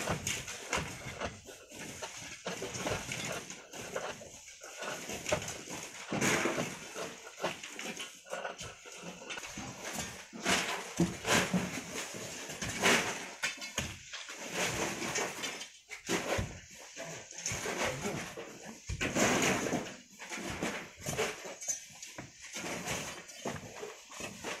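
Long poles scraping and jabbing at a compacted volcanic sand cliff face, with loose sand and grit coming down in irregular short rushes, the strongest about a quarter, half and three-quarters of the way through.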